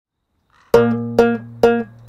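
Six-string banjo guitar (ganjo) plucked: after a short silence, three evenly spaced chords about half a second apart, each with a bright attack that rings and decays over a sustained low bass note.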